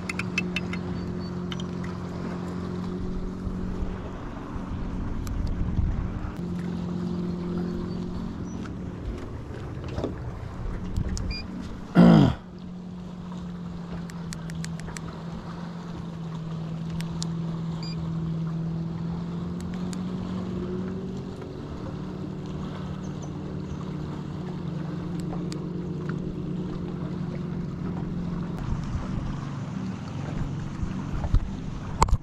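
Electric trolling motor humming steadily, its pitch shifting slightly about two-thirds of the way through as the motor speed changes. About twelve seconds in there is a brief loud swish falling in pitch, typical of a rod being cast.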